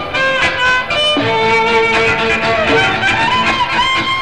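Instrumental orchestral music with violins carrying a held, sliding melody line.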